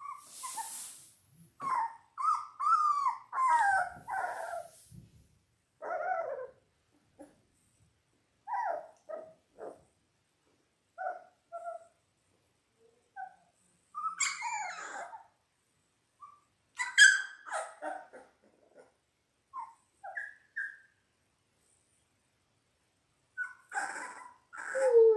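Two-and-a-half-week-old Labrador retriever puppies whimpering and squeaking in short, scattered calls with pauses between, some of them sliding in pitch.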